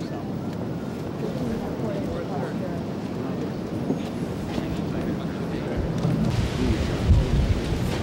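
Indistinct murmur of several people talking at once, with wind buffeting the microphone in low rumbling gusts from about six seconds in.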